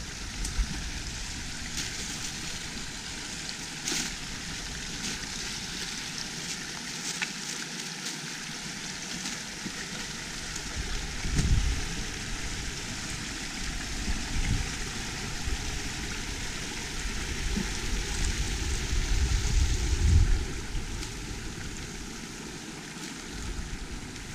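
Small woodland brook running steadily, heard as an even rushing hiss. Low rumbles of wind on the microphone swell about eleven seconds in and again near the end.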